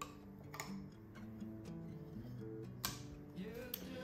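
Soft background music with held notes, under a few faint metallic clicks as the lid is pried off a can of paint.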